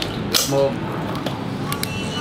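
Cooked lobster shell being pulled apart by hand: one sharp crack shortly after the start and a few small clicks near the end, with a single short spoken word between them.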